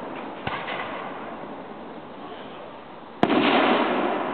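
Aerial fireworks: the noise of a spent shell dies away, a smaller pop comes about half a second in, then a shell bursts with a sharp, loud bang about three seconds in, followed by a loud rumble.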